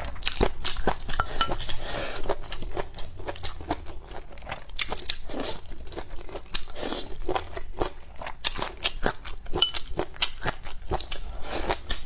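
A person chewing and crunching pickled chicken feet close to the microphone, with rapid crunches and wet mouth clicks throughout.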